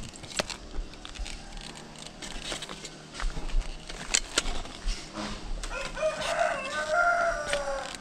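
A rooster crowing once near the end, a single arched call of about two seconds. Under it, scattered sharp clicks and clacks from an aluminium telescopic ladder being handled, its sections knocking together.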